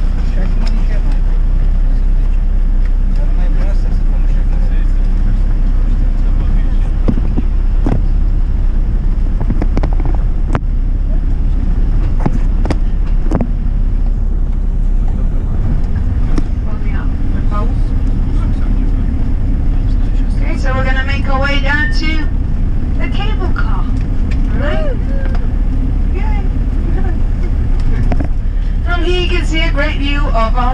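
Minibus engine and road noise heard inside the cabin while driving, a steady low rumble, with voices talking briefly about two-thirds of the way through and again near the end.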